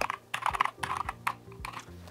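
Typing on a computer keyboard: an uneven run of quick keystrokes.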